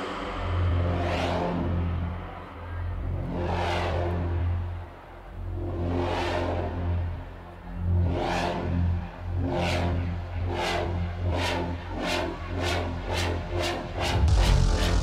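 Electronic dance music breakdown and build-up: a held bass note under whooshing synth swells every couple of seconds. From about ten seconds in the swells repeat faster and faster, building to the drop at the end.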